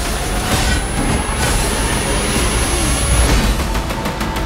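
Cinematic trailer sound effects: a dense, steady, heavy rumble with a thin high whine that rises slightly and cuts off about three seconds in.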